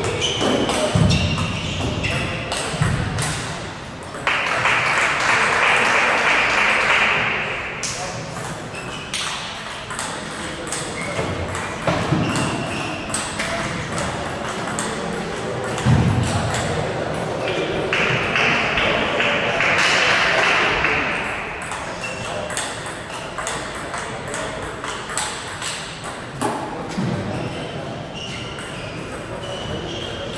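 Table tennis ball clicking off rackets and the table in a rally, with further ball clicks from play across a large hall. Occasional low thumps are heard, and there are two loud noisy stretches of about three seconds each, one starting about four seconds in and one about eighteen seconds in.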